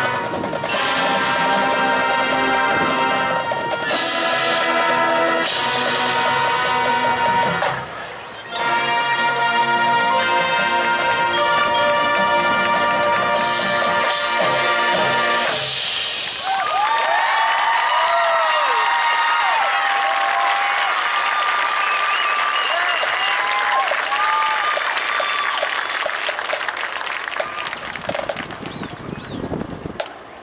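High school marching band playing at full volume with loud crashes, breaking off briefly once and ending about halfway through. The crowd then cheers and applauds with whoops, and the cheering dies down near the end.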